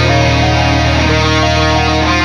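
Instrumental metalcore music: distorted electric guitar chords held and changing every half second or so over a steady low bass, with no vocals.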